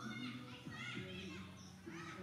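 Children's voices chattering and calling in the background, several overlapping, with shifting and gliding pitch.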